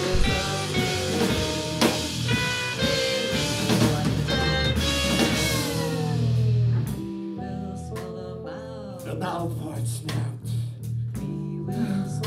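Live rock band playing: electric guitar, bass and drum kit, with cymbal crashes. About seven seconds in, the music thins out into a quieter, sparser passage of separate notes.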